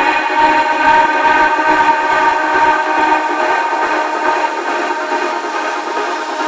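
Psytrance track in a breakdown: a held, many-layered synthesizer chord with the kick drum and bass dropped out.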